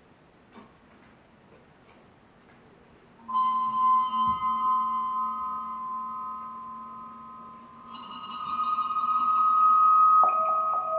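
A small hand-held metal disc bowed with a bow, ringing with several steady, overlapping tones that start suddenly about three seconds in. The ringing fades, then swells again near the end as the bowing picks up.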